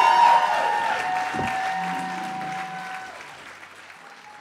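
Audience applauding with music playing, both fading out steadily.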